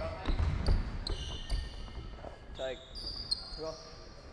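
Basketballs bouncing on a hardwood gym floor, mostly in the first second or so, in a large echoing hall. High squeaks, from sneakers on the court, follow through the rest.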